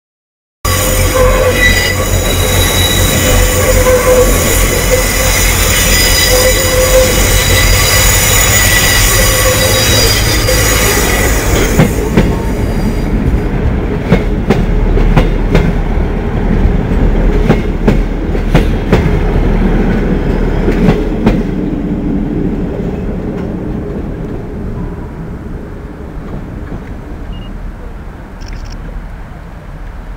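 First Great Western passenger train passing close by. Its wheels squeal loudly for about the first eleven seconds, then click over the rail joints and points as the coaches go by, and the sound fades away over the last several seconds.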